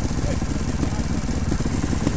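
A trials motorcycle engine idling steadily with a low, even pulse.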